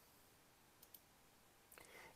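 Near silence with two faint computer-mouse clicks in quick succession about a second in.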